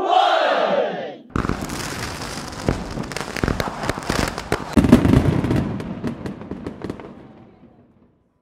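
A shouted countdown ends about a second in. Then a loud burst of rapid crackling pops with a hiss behind it starts suddenly and dies away over about six seconds.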